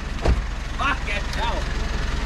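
A 4WD engine running with a steady low rumble, a sharp thump about a third of a second in, and short voices calling out.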